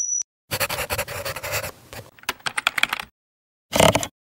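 Sound effects of an animated logo sting: a brief high steady tone, then about two and a half seconds of scratchy, rustling noise that ends in a run of rapid clicks, and a short loud burst just before the end.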